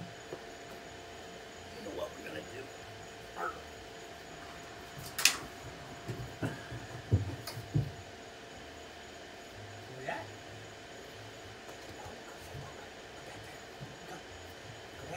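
Knocks and thumps on an aluminum jonboat hull as a dog climbs aboard: a sharp knock about five seconds in, then a cluster of heavier thumps around seven seconds, with a smaller knock near ten seconds.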